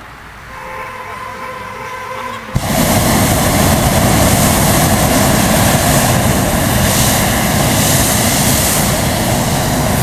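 Hot-air balloon propane burner igniting suddenly about two and a half seconds in, then firing in one long, loud, steady blast as it heats the air in the upright envelope.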